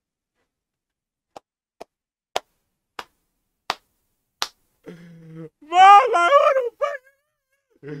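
A man laughing hard: a string of short sharp clicks in the first half, then a loud, high-pitched, breaking laugh about six seconds in.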